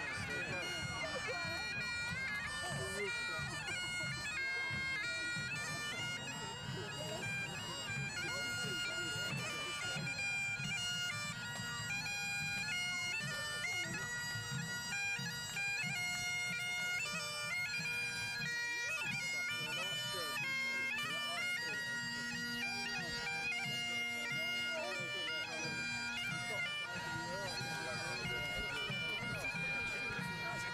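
Bagpipes playing a marching tune: steady drones under a chanter melody that steps from note to note.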